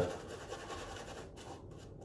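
Faint scraping of a safety razor drawn through lather and stubble.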